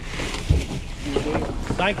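Wind rumbling on the camera microphone while plastic bags are handled, with one dull thump about half a second in. A voice says "thank" near the end.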